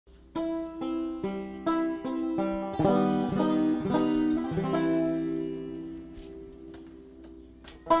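Banjo picking a slow solo intro, starting with single plucked notes about two a second. It moves into a quicker run of notes, then leaves a last chord ringing and dying away over about three seconds.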